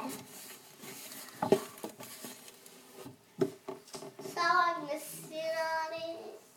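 A few small knocks and handling sounds, about a second and a half and three and a half seconds in. Near the end comes a child's voice holding drawn-out, sung notes.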